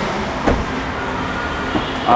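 Steady hum of road traffic, with a single short knock about half a second in.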